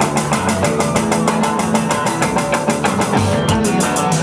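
Live rock band playing, led by electric guitar played on a single-cutaway solid-body guitar, over a fast, even beat.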